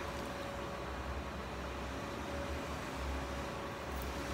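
Steady low hum and hiss of room background noise with a faint, even whine, like a running household appliance or fan; no distinct events.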